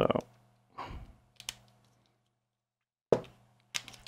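A few faint, sharp clicks and light rustles of wires being handled and pushed into terminal blocks, with a stretch of near silence in the middle.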